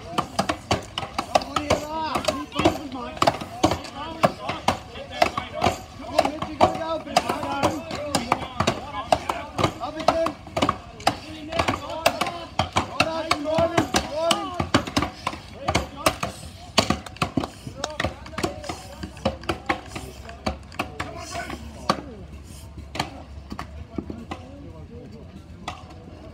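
Several axes chopping into upright standing blocks of wood at once, a rapid, overlapping run of sharp strikes, with voices calling over them for the first half. The strikes become sparser near the end as the blocks are severed.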